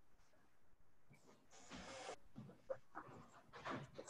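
Near silence: a pause on an online call, with a faint, brief hiss about halfway through.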